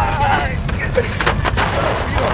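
Wind buffeting the microphone as a heavy, uneven low rumble, with a brief burst of a man's laughing or shouting at the start.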